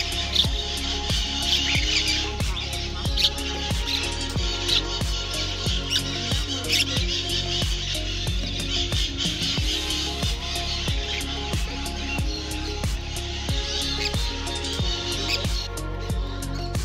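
Background pop music with a steady beat, over a continuous chorus of bird chirps and squawks that drops away near the end.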